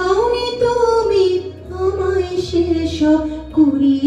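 A woman singing a Bengali film song into a handheld microphone, holding long notes that slide up and down in pitch.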